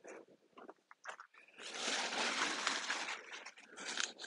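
Sunflower leaves and stalks rustling and crunching as they are handled, with a dense rustle lasting about a second and a half in the middle among lighter scattered crackles.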